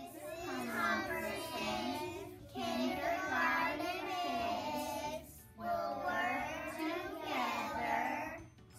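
A class of young kindergarten children singing together in unison, in three phrases with short breaks between them.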